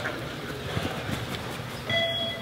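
Running footfalls of several players on artificial turf, echoing in a large hall, with a steady rumbling background. The electronic beep of the beep-test recording starts just before the end.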